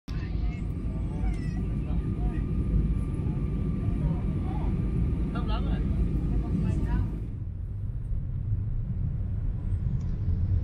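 Airliner cabin noise: a steady low rumble of engines and airflow inside the cabin, with faint voices over it. About seven seconds in it changes abruptly to a quieter, duller rumble.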